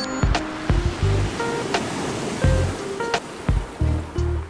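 Background music over the rush of seawater as a wave surges in through a ship's open side passage and floods across its deck.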